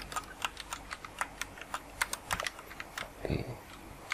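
Computer keyboard being typed on quickly: short, sharp key clicks at an uneven pace, several a second, as keyboard shortcuts and formula entries are keyed in.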